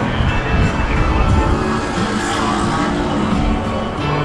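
Wind buffeting the microphone with a ragged low rumble, over music playing in the background.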